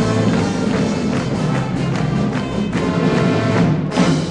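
Music with a steady beat of about two beats a second, percussion over sustained pitched notes.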